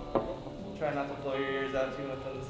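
Electric guitar played live with a band: a sharp struck attack just after the start, then held notes that waver slightly in pitch.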